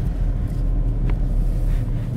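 Steady low rumble of a car's engine and running gear, heard from inside the cabin.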